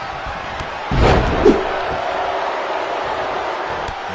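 Wrestling-broadcast crowd noise with one heavy slam about a second in.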